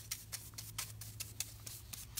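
Chip brush scratching cerusing wax onto a painted cabinet door: a run of faint, irregular brushing scratches and ticks over a low steady hum.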